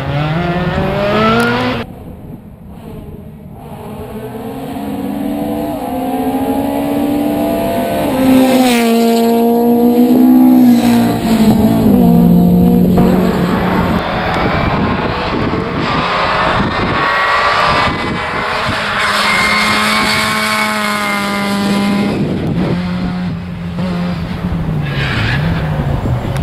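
Rally car engine revving hard through the gears, its pitch climbing and then dropping sharply at each gearshift or lift. The sound cuts away suddenly about two seconds in, then builds again to its loudest around ten seconds in.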